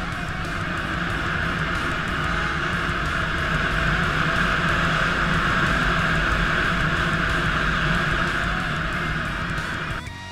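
A Suzuki Djebel 250 dual-sport motorcycle running while being ridden on a dirt track, a steady rush of engine and riding noise that grows louder over the first few seconds, mixed with guitar music. The riding noise cuts off abruptly at the end, leaving the music.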